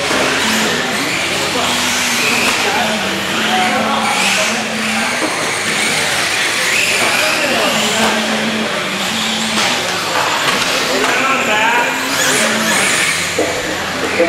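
Radio-controlled race cars' motors whining on the track, the pitch rising and falling as they speed up and slow down, with people's voices in the background.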